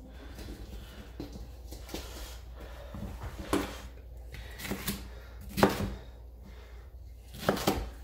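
Chef's knife cutting green bell pepper on a plastic cutting board: a few separate sharp knocks of the blade hitting the board in the second half, the loudest a little past the middle and two close together near the end. Before that, only a faint handling rustle.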